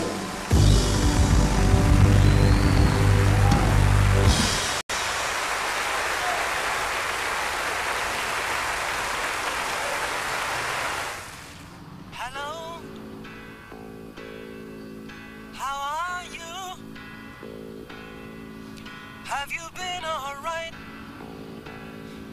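A live band ends a song with the audience applauding, and the applause carries on alone for several seconds after the music stops. About twelve seconds in it gives way to quieter background music: sustained chords under a wavering, sliding melody.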